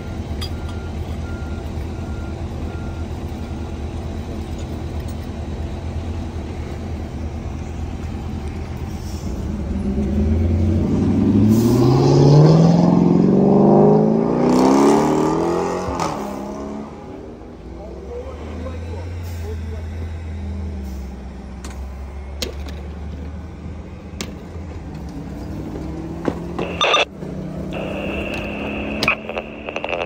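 Fire engine's diesel running steadily, then revving up with a pitch that climbs for several seconds before it drops back to a lower steady run. A few sharp clicks come near the end.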